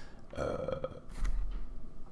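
A man's drawn-out, croaky hesitation sound 'euh' in a pause between words, followed by a brief low rumble.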